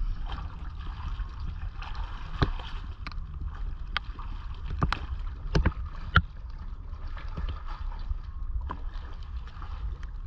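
Water lapping around a small boat under a low rumble of wind on the microphone. About six sharp clicks or knocks break through it, the loudest about six seconds in.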